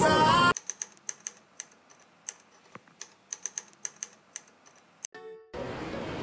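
A pop song cuts off suddenly, leaving a run of about twenty light, irregular clicks over four and a half seconds, some coming quickly one after another. A short pitched beep follows, then a steady hum of shop ambience.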